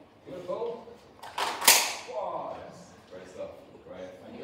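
A Christmas cracker pulled apart by two people: a short rip ending in a loud bang about one and a half seconds in, with soft voices around it.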